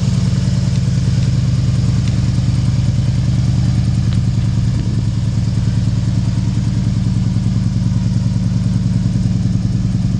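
The 1968 Ford Fairlane's 289 V8 idling steadily, with an even, rapid exhaust pulse.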